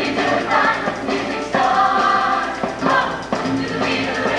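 Show choir singing an upbeat number in harmony over an accompaniment with a steady beat.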